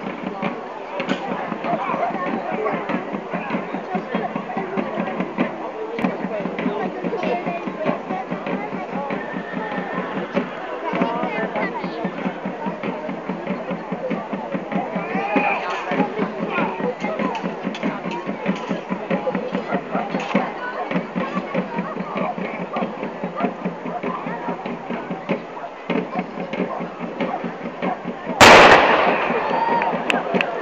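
A single loud black-powder bang near the end, dying away over about a second, over continuous chatter from the crowd.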